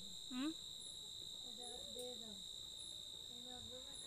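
Night insect chorus: crickets trilling as a steady, unbroken high-pitched tone, with a second insect chirping about once a second. A brief rising vocal sound comes about half a second in, and faint voices murmur underneath.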